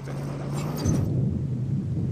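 A low, steady engine rumble with a haze of noise over it. The higher hiss thins out about a second in while the low hum goes on.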